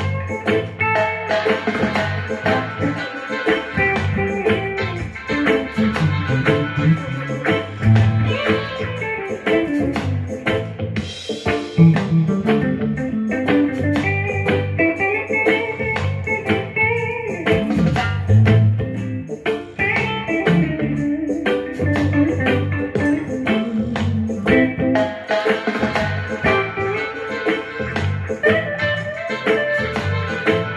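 Gibson Les Paul Special Tribute electric guitar played over a backing track with drums and bass, picking single-note lines and fills throughout.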